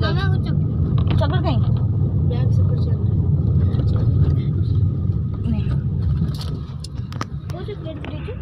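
Steady low rumble of road and engine noise inside the cabin of a moving car, easing somewhat about six seconds in, with a few light clicks.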